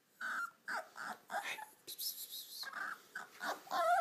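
Beagle puppy whimpering in a string of short, high cries, a dozen or so in four seconds, with a longer bending whine near the end.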